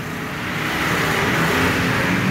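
Steady rushing background noise with a faint low hum, swelling slightly toward the end.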